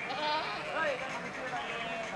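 Goats in a herd bleating, several quavering calls overlapping in the first second or so.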